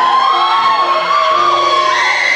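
A singer holds one long high note, sliding up into it and wavering slightly, over steady piano accompaniment.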